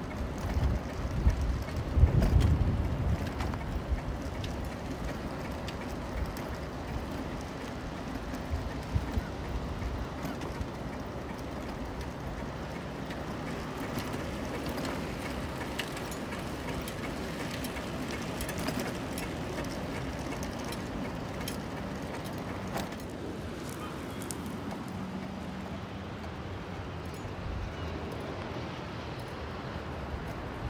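Wind buffeting a bike-mounted microphone, heaviest in the first few seconds, over the steady rolling noise of a Bob Jackson 531 steel touring bicycle on a paved promenade, with a few light clicks.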